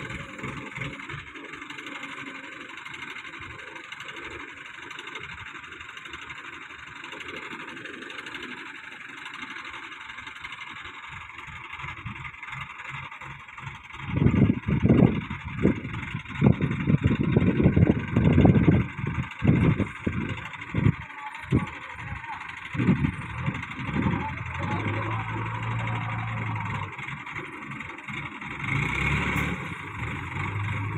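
An ACE 14XW pick-and-carry crane's engine runs steadily while the crane lifts a heavy load. About halfway through come loud, irregular low rumbling bursts lasting about ten seconds, then a steadier low hum.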